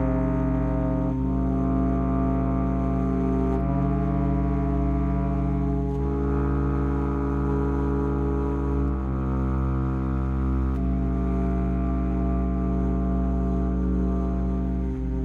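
Bass flute and bass clarinet holding long, low, slurred notes together, moving to new pitches every two to three seconds.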